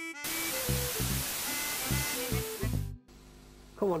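A short musical jingle, bass notes and a melody, under a loud hiss of television static, cutting off abruptly about three seconds in. Near the end a man's voice begins.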